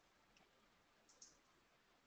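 Near silence: faint hiss of an open line with two faint short clicks, the second about a second in.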